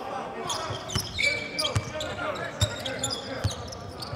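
Live court sound in an empty basketball arena: a basketball bouncing on the hardwood in a few dull thumps under a second apart, a brief high squeak about a second in, and scattered knocks and faint shouts from the players on court.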